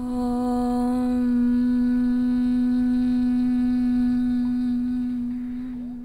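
A voice chanting a long Om on one steady low note. The open vowel closes into a hum about a second in, and the hum fades out near the end.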